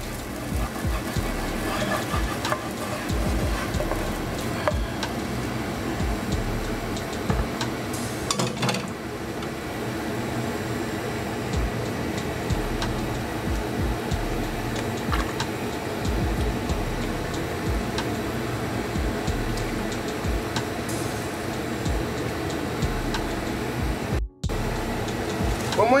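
A wooden spoon scraping and knocking against a frying pan as a fried onion and red pepper mixture is scraped into a pot of aubergines and broth, with a few sharper knocks, over a steady background of music.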